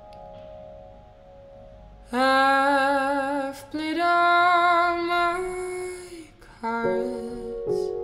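Soft solo piano notes, then a female voice sings two long held notes with vibrato over the piano, the second slightly higher and longer; piano chords return near the end.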